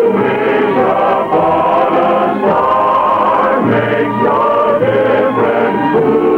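A choir singing, with long held notes that shift in pitch every second or so.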